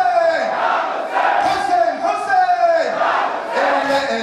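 Many men's voices chanting a mournful Shia lament refrain together in long held phrases, a mourners' chorus answering the lead reciter.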